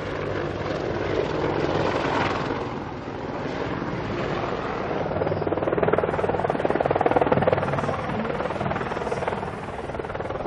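AH-64 Apache attack helicopter flying past, a steady rotor beat over engine whine that swells louder in the second half.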